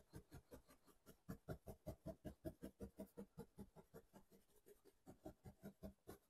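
A soft brush patting gold leaf down onto tacky gilding size in rapid, faint taps, about six a second, pressing the leaf onto the glue. There is a short pause about four seconds in.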